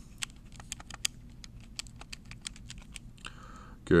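Keys being pressed on a Texas Instruments calculator: a quick run of a dozen or so light clicks, as the division 90 ÷ 23 is keyed in.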